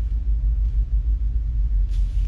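Steady low rumble from the background of the recording, with a brief faint hiss near the end.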